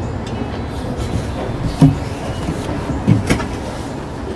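Steady rumbling background noise with a few brief soft knocks, about two seconds in and again near the end.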